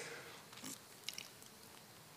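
Near silence in a small room, with a few faint short clicks about half a second and a second in.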